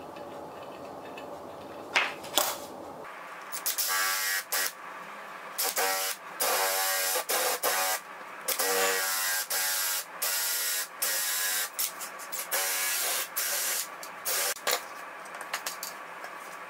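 Cordless drill boring into a hand-held block of wood in repeated short trigger bursts. About a dozen stop-start runs of the motor whine and bit cutting, each up to about a second. A couple of knocks come before the drilling starts.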